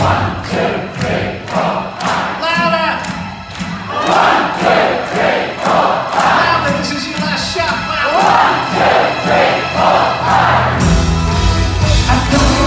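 Large concert audience singing a chorus together at the top of their voices over a steady drum beat, the full rock band coming in near the end.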